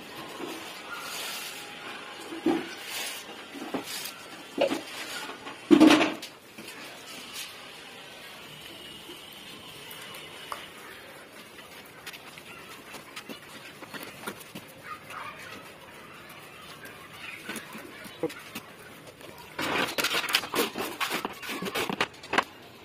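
Wet cement mortar worked by hand on a concrete floor: scattered wet slaps and squelches, the loudest about six seconds in, then a quick run of steel trowels scraping as the mortar bed is spread near the end.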